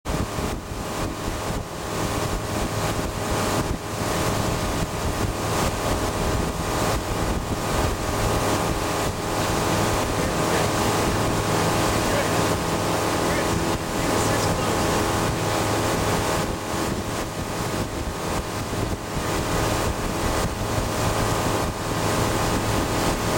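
Tow boat's engine running steadily at towing speed, with water rushing past the hull and wind buffeting the microphone.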